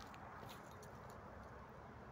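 Near silence: quiet outdoor background with a few faint ticks.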